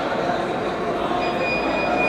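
Dense crowd hubbub, many people talking at once in a large echoing hall, with a thin steady high tone coming in about a second in.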